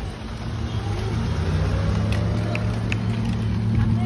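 A motor vehicle engine running nearby: a low, steady hum that grows louder over the first couple of seconds and then holds.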